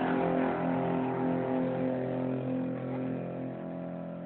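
An electric guitar's final chord rings on through the amplifier as a steady, many-pitched drone, slowly fading out at the end of the song.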